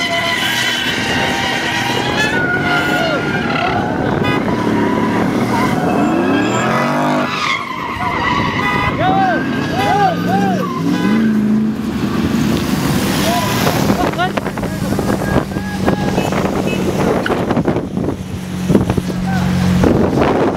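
Car engines revving and tyres squealing as cars skid, over dense steady traffic noise.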